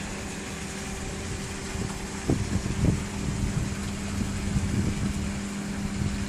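A steady mechanical hum over a faint hiss, with a few soft thuds about two and three seconds in and a couple more near the end.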